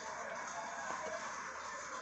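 Faint television sound playing in the background under a low, steady hiss.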